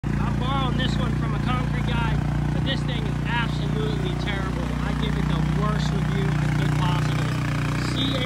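Small engine of a Cormidi C85 tracked mini dumper running steadily as the machine is driven, with a man's voice talking over it.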